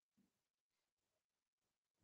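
Near silence: no audible sound at all.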